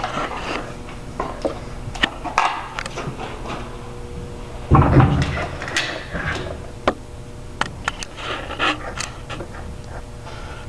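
Handling noises of a crossbow being lifted onto a wooden rest and readied with a bolt: scattered clicks and rustles, with one heavier thump about five seconds in.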